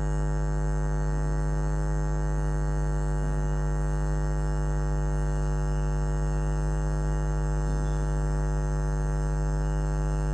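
Steady electrical mains hum with a buzzy stack of overtones, unchanging throughout.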